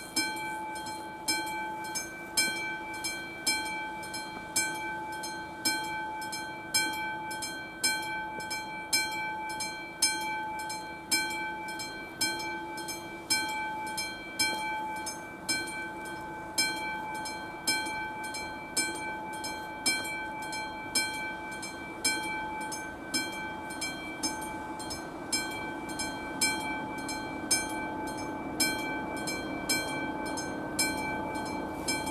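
Classic mechanical bell of an AŽD 71 level-crossing warning signal starting up and ringing with a steady, repeating beat of metallic strikes, louder ones about once a second: the crossing's warning for an approaching train.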